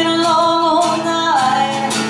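A song with a sung vocal melody over instrumental accompaniment.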